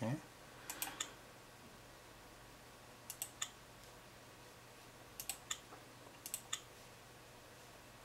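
Computer mouse button clicks: four quick pairs of sharp clicks, a second or two apart, over a faint low hum.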